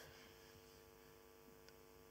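Near silence: a faint steady electrical hum in the sound system.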